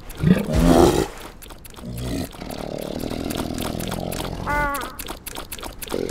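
Cartoon polar bear growling: a loud grunt about half a second in, then a long low rumbling growl from about two seconds in. A brief high squeak comes near the end.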